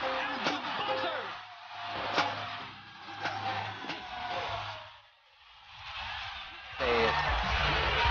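Basketball arena sound from game footage: crowd noise with sharp clicks and short squeaks of sneakers on the court. It fades almost out about five seconds in. Loud music with a steady beat comes in near the end.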